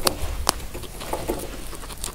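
Guinea pigs chewing and tugging at dry Timothy hay: crisp crunching and rustling with sharp crackles, the loudest about half a second in.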